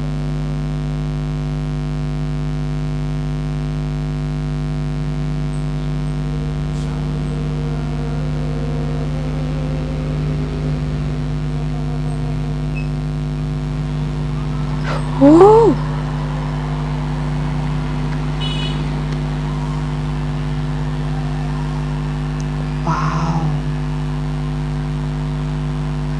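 Steady electrical mains hum and buzz, a drone of fixed low tones that never changes. About halfway through, a short rising vocal sound breaks in loudly, and a smaller brief one comes a few seconds later.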